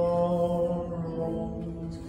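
A man singing a hymn, holding one long note that fades away near the end.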